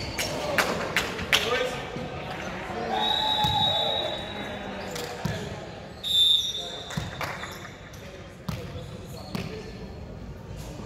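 Echoing sports-hall sound between volleyball rallies: indistinct players' voices, a ball thudding on the hardwood floor several times, and two brief high-pitched squeaks.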